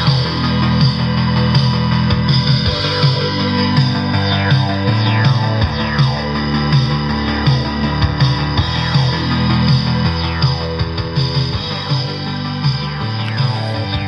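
Guitar-based rock music playing at a loud level through a Blackweb 100-watt bookshelf stereo's speakers, with a steady beat and bass line.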